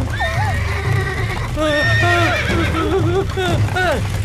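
Cartoon horse whinnying over a steady rhythm of galloping hoofbeats, with frightened people crying out as the cart runs out of control.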